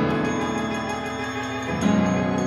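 Contemporary chamber ensemble of clarinet, trumpet, violin, viola, cello, piano and percussion playing a loud, sustained, many-voiced chord that has just entered suddenly. A fresh loud accent with a strong low note comes in near the end.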